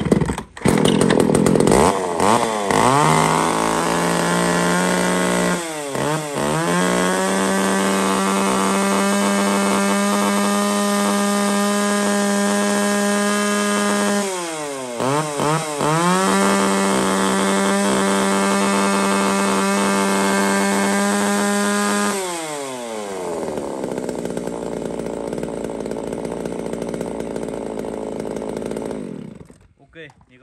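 Makita-badged two-stroke chainsaw, built on the Echo 281 design, revved to full throttle and held at high, steady revs, running strong. The throttle is let off briefly twice, about six and fifteen seconds in. About twenty-two seconds in it drops back to idle, and it shuts off just before the end.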